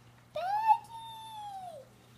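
A child imitating a cat with one long, high meow that rises, holds and falls away at the end.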